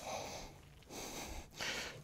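Hand rip saw cutting along the grain of a board: about three soft strokes, the last near the end the loudest.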